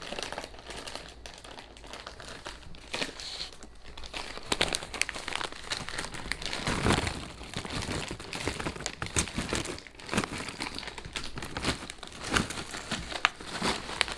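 A plastic snack bag crinkling as it is shaken, with crunchy pork rinds tumbling out onto a paper plate, making a busy run of crackles and light clatters.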